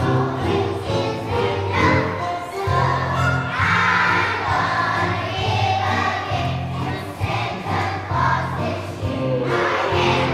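A group of young children singing together as a choir, over an instrumental accompaniment with a steady bass line.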